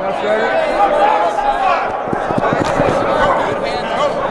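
A crowd of football players shouting and chattering during a sprint relay in a large indoor practice hall. Around two to three seconds in comes a quick run of sharp knocks.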